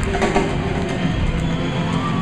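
A punk rock band playing live at full volume, with the audience shouting and cheering along.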